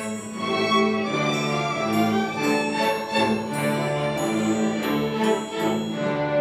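Student string orchestra (violins, violas, cellos and double basses) playing a piece: held bowed chords that shift every half second or so over a steady low bass note.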